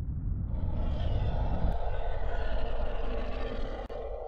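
A synthesized outro sound effect with steady held tones, swelling in about half a second in over a low rumble. The rumble drops away about halfway through, leaving the effect sounding on its own.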